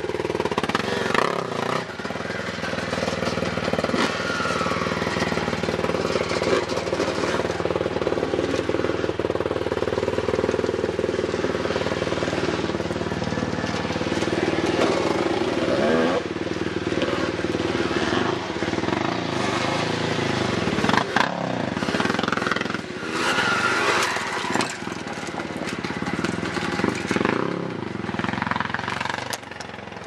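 Dirt bike engines on a motocross track, revving up and falling back over and over as the riders go round.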